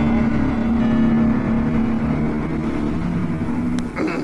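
A car engine sound effect, running steadily with a low hum and pulsing rumble, ending with a sharp click just before the end.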